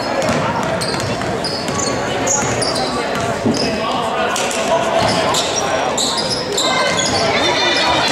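A basketball being dribbled on a hardwood gym floor during play, with repeated short, high sneaker squeaks and a background of voices echoing in a large gym.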